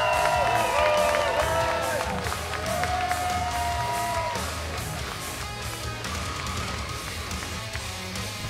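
Walk-out music playing: held, sliding melody notes over a steady beat of about four hits a second, growing somewhat quieter toward the end.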